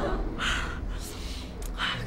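A man's breathy sigh, one noisy exhale about half a second in and another breath near the end. It comes as he frets over whether it is still 1998.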